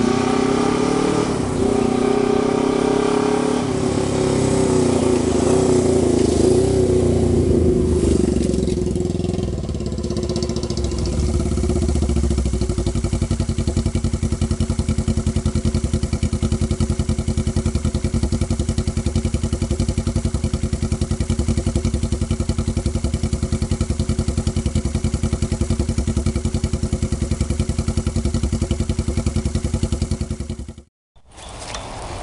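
Honda 350 parallel-twin motorcycle engine with a two-into-one exhaust running under way, its pitch rising and dipping several times over the first eight seconds or so. From about twelve seconds in it settles into a steady, even idle beat.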